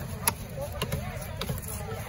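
Heavy fish-cutting knife chopping ray on a wooden block: three sharp knocks about half a second apart.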